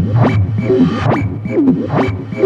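Modular-synth techno in a breakdown with the kick drum dropped out: a looping pattern of short falling synth blips and clicking percussion hits, about two a second.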